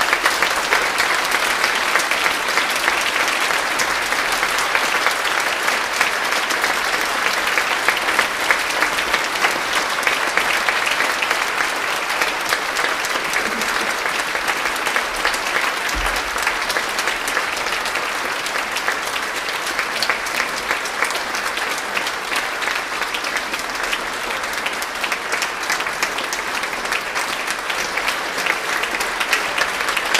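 Large concert audience applauding, a dense, steady clapping.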